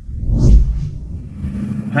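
Car engine revving, heard from inside the cabin: a deep rumble that swells to its loudest about half a second in, then eases to a steady drone.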